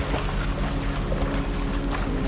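Water splashing from a swimmer's front-crawl strokes and kicks in an outdoor swimming pool, over a steady low hum.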